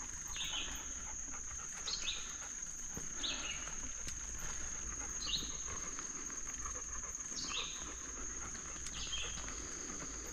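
A songbird repeating a short downslurred call note every second or two, over a steady high-pitched insect drone in summer woodland.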